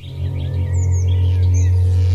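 A low, steady droning tone from the soundtrack music comes in suddenly and holds unchanged. A few bird chirps sound over it in the first half.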